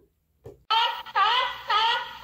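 A short musical stinger begins about two-thirds of a second in, after a brief silence. It is a run of pitched notes, about two a second, each one dipping and then rising in pitch.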